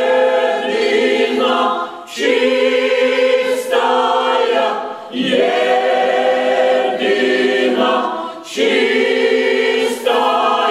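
Mixed-voice folk choir singing unaccompanied: long held chords in slow phrases, with short breaks for breath about every three seconds.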